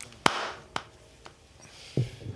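Three light, sharp clicks about half a second apart, the first the loudest, over faint room hiss.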